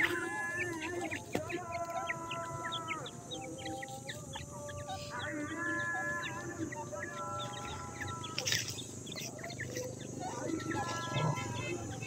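Young grey francolins (teetar partridge chicks) giving many short, high chirps. Under them run steady held tones, several layered together, that come and go every second or two.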